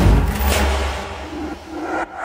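A deep rumbling trailer hit with a brief rising whoosh about half a second in, fading away over about a second and a half.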